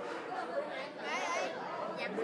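Indistinct chatter of voices talking.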